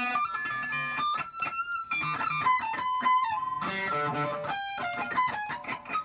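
Electric guitar playing a run of high single notes up at the top of the neck, near the 24th fret of the high E string, with quick note changes and a few notes held.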